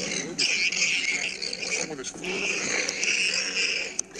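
Insects chirring in long high-pitched stretches that break off briefly a few times, with a fainter wavering lower sound underneath.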